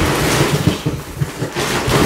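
A large cardboard box being handled and rummaged through: cardboard flaps rustling and scraping, with a run of dull knocks and thumps.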